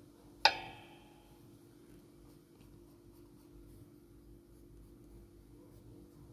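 Graphite pencil strokes scratching faintly on paper, with one sharp clink that rings briefly about half a second in.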